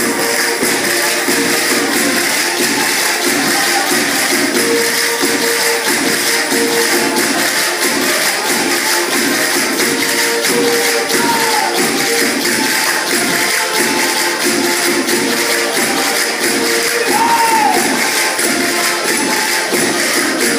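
Portuguese folk corridinho music: an accordion playing the tune in held notes over fast, even percussion taps, with dancers' feet shuffling on the stage.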